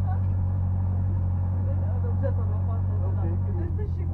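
Škoda 130 rally car's four-cylinder engine running steadily at low revs, heard from inside the cabin as the car rolls slowly; the engine note changes and turns choppier near the end.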